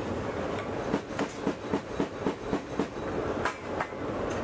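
Steady rushing drone inside an AC-130J gunship cabin. From about a second in, a quick, uneven run of about a dozen sharp metallic clacks sounds over it, roughly four a second.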